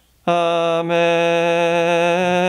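A man's voice chanting one long, steady held note on a single pitch, starting about a quarter of a second in after a brief pause.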